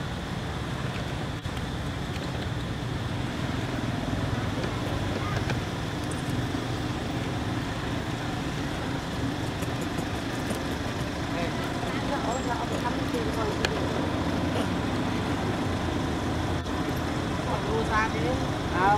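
Steady outdoor background din: a low, even rumble like distant road traffic, with faint indistinct voices.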